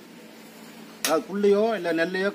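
About a second of quiet background, then a brief sharp click followed by a man speaking Tamil.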